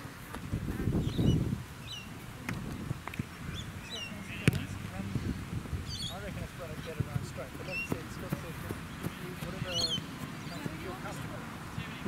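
Open-field ambience with birds chirping and calling throughout. A low rumble comes about a second in, and a single sharp thud about four and a half seconds in, a football being kicked.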